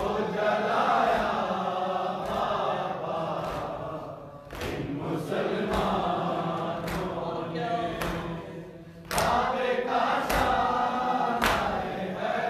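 A group of men chanting a noha together in a lament rhythm, with hand strikes on bare chests (matam) landing in time, about one beat a second, from about four and a half seconds in.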